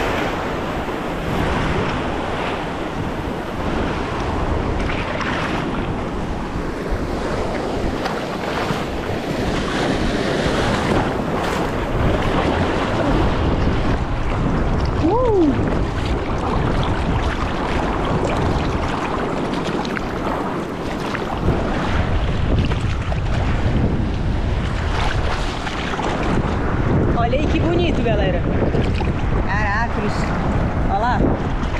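Sea water sloshing and surf washing around a camera held at the water's surface as a bodyboarder paddles out through whitewater. The sound is a continuous, dense churning that rises and falls with the water.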